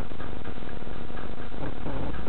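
Cabin sound of a stationary car with its engine idling: a steady low hum with irregular light ticks.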